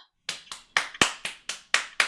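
Hands clapping in a steady, even beat, about four claps a second, starting about a quarter second in: applause welcoming performers on stage.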